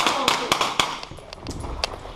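A Simunitions training pistol firing marking cartridges in a quick string of sharp cracks about a quarter second apart through the first second, with a few fainter reports later.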